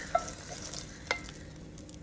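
Wooden spoon scraping browned sausage out of a nonstick frying pan into a soup pot, with two sharp knocks of the spoon against the pan, one just after the start and one about a second in. A faint sizzle of hot fat runs under it.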